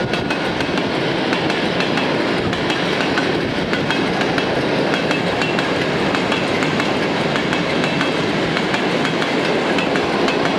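Loaded freight train of covered hopper wagons rolling past close by: a steady rumble of wheels on rail with frequent clicking and clattering as the bogies cross rail joints and a soft, pumping spot in the track where the wagons bounce.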